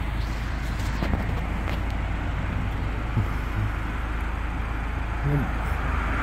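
Steady low hum with a faint hiss and no distinct events, with a brief faint voice-like murmur about five seconds in.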